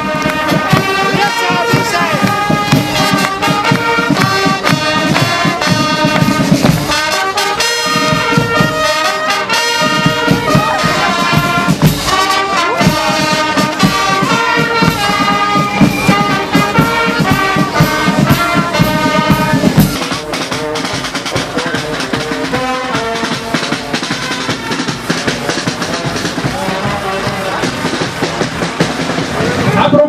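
Brass band music with trumpets and trombones over a steady beat. About two-thirds of the way through it becomes quieter and the beat drops out.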